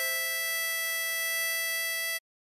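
A 10-hole diatonic harmonica holds a steady blow note on hole 5 (E), with a second, lower note sounding alongside it.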